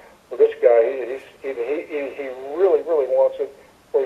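Speech: a person talking, sounding thin, as over a telephone line.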